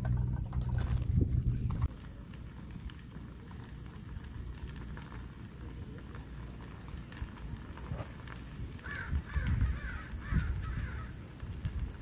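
A crow cawing several times in quick succession about nine seconds in, over faint outdoor background noise. A low steady rumble fills the first two seconds and cuts off suddenly.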